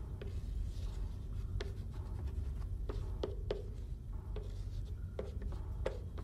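Scattered, irregular light clicks and taps over a steady low hum.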